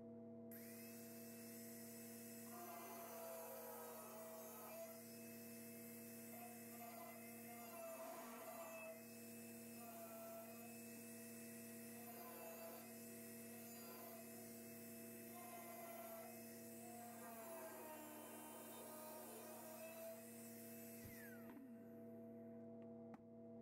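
Angle grinder with a cutoff wheel, running faint and cutting into the steel inner door panel, its pitch dipping now and then under load; it starts just after the beginning and spins down near the end. A steady mains hum runs underneath.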